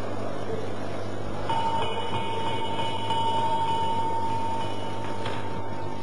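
Steady background hiss and low electrical hum. A steady high whistle-like tone starts about a second and a half in and holds for about four seconds before stopping just before the end.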